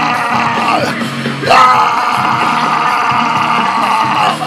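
Live heavy rock music with sustained guitar chords. A voice yells, rising in pitch, about a second and a half in, and this is the loudest moment.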